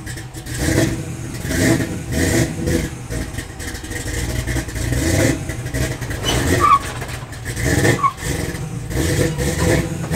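Nissan 240SX (S14) drift car's engine running at low speed with small throttle changes, the loudness rising and falling, as the car is driven slowly up a car-hauler trailer's ramps.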